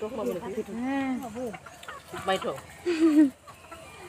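Chickens clucking, a string of short pitched calls.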